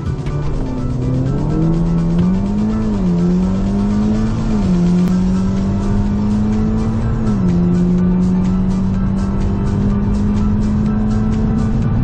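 Audi S3's turbocharged 2.0-litre four-cylinder engine, heard from inside the cabin, accelerating hard from a standing start down a quarter-mile drag strip. Its pitch climbs through each gear and drops sharply at three upshifts, about 3, 4.5 and 7 seconds in, then rises more slowly in the higher gear.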